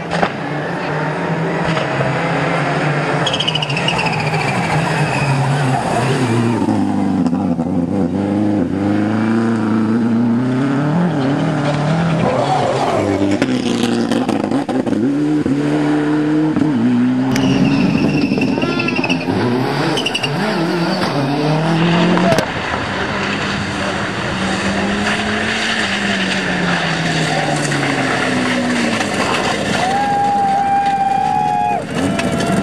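Rally car engines at full throttle on a stage, pitch rising and dropping again and again through gear changes and lifts for the corners, with several cars passing in turn.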